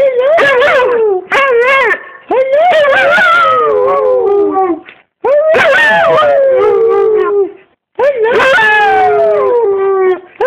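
A dog 'talking': four long, wavering howl-like calls in a row, each sliding down in pitch, with short breaks between them.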